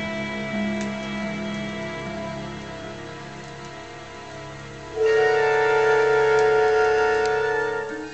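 Film-score music played from a vinyl record through room loudspeakers: held, sustained chords, with a louder chord coming in about five seconds in.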